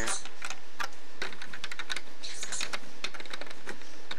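Plastic LEGO pieces clicking and tapping as fingers press a minifigure and a rock piece back into place: a quick, irregular run of small sharp clicks.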